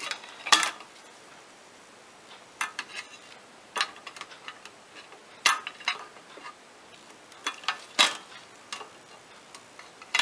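Multi-tool pliers clicking and tapping against a sheet-metal drive bracket while working at rubber anti-vibration mounts: scattered sharp clicks every second or two, with quieter small rattles between.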